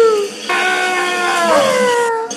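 A looped vocal sample in a beat made from recorded noises: a short falling call, then a long held call that slides down in pitch. The pattern repeats every two seconds.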